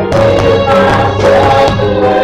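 Live worship song: an electronic keyboard holds sustained organ-like chords while a group of voices sings together.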